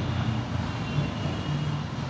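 Steady background engine noise: a low hum under an even rushing sound, with no clear start or stop.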